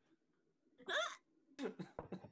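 A man's short stifled laughs: a brief breathy burst about a second in, then a few quick catches near the end.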